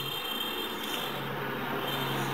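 Felt-tip marker rubbing across paper as a long line is drawn, over a steady low hum.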